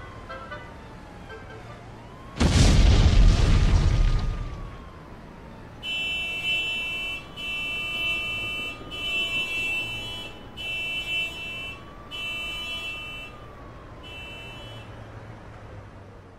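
A loud explosion boom about two and a half seconds in, dying away over a second or two. A siren wails slowly up and down throughout, and from about six seconds a car alarm sounds in six repeated bursts.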